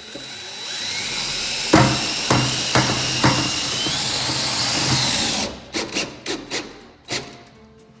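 Cordless drill driving a drywall screw through corrugated galvanized sheet metal into a wooden board. The motor runs for about five seconds with its pitch rising, and there are four sharp knocks partway through. It then stops, followed by a few short clicks and taps.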